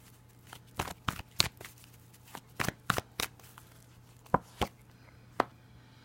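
A tarot deck shuffled by hand: a series of irregular, sharp card clicks and snaps. A faint steady low hum runs underneath.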